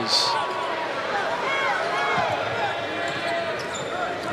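Basketball game sound on a hardwood court: short sneaker squeaks over a steady wash of arena crowd noise.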